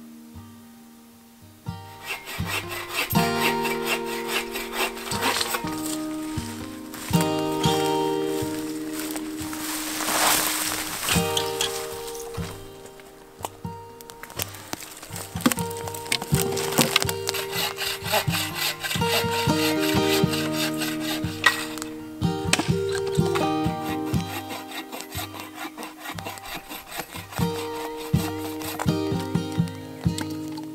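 Background music of sustained melodic notes, with the sharp knocks, snaps and sawing of firewood being broken and cut for a campfire.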